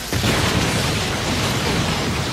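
Cartoon fight sound effects: a sudden heavy impact just after the start, then a continuing rumbling crash, as of stone floor breaking and debris flying.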